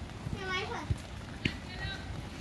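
Children's high voices shouting and calling during a football game, with two short sharp thumps about a second and a second and a half in.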